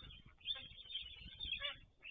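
Small birds chirping and singing, with a brief call falling in pitch near the end, over a low rumble on the nest camera's microphone.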